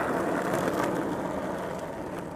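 Skateboard wheels rolling on asphalt, a steady grainy rumble that fades as the board moves away.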